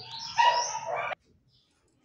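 A dog whimpering in short, high, bending cries that cut off suddenly about a second in.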